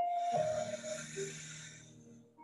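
A deep, audible yoga breath out: a breathy exhale that starts strongly and fades away over about a second and a half.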